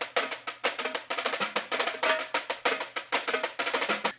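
Sampled pipe-band snare drum loop playing back: rapid, crisp snare strokes and rolls, many strikes a second, with no bass underneath.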